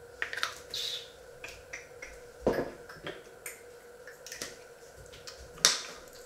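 Scattered light clicks and taps, with two louder knocks, one about two and a half seconds in and one near the end, over a faint steady hum.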